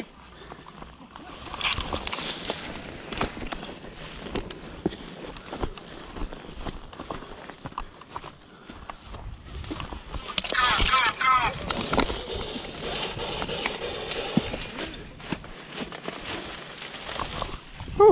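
Footsteps, scuffs and the rustle of dry grass and brush, with scattered knocks and clicks, as someone clambers among boulders. A short burst of wavering high tones comes about ten seconds in.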